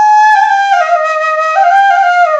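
Bamboo suling flute playing a short melodic phrase that starts high, slides down by steps, rises again about one and a half seconds in and falls once more. The sliding notes are fingered with a hole half covered.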